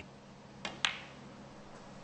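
A snooker cue tip striking the cue ball, then about a fifth of a second later a louder, sharper click as the cue ball hits the blue.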